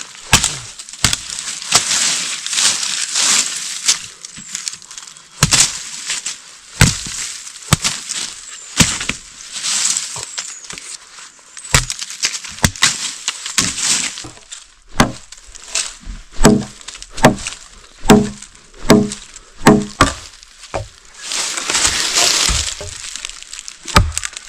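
A curved machete-type blade chopping into small branches and saplings, with twigs cracking and leafy brush rustling. In the second half the chops settle into a steady run of heavier strokes, a little over one a second, each with a dull thud of the blade biting wood. A loud rustle of branches comes near the end.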